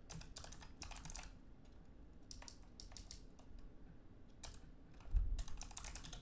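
Quiet computer-keyboard typing: irregular single keystrokes, growing quicker and louder near the end.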